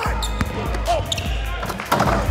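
Basketball practice on a hardwood court: a ball bouncing in several sharp hits, with short sneaker squeaks, over background music with a steady bass.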